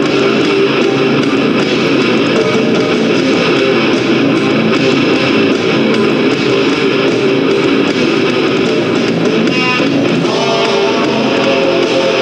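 Loud nu metal band music driven by electric guitars, playing continuously.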